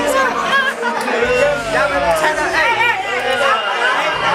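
Crowd chatter: many voices talking over each other at once. A low bass from music runs underneath and cuts out briefly twice.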